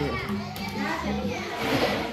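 Several young children's voices chattering and calling over one another in a busy room.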